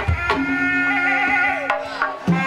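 Sundanese kendang pencak music: the big kendang drums ease off while a steady low tone and a wavering, reedy melody note hold for over a second, then a sharp drum stroke comes in near the end.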